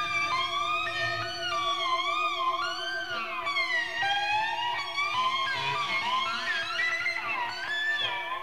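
Industrial rock music with no vocals: electric guitar pitches bending and gliding up and down, siren-like, over a steady wavering drone.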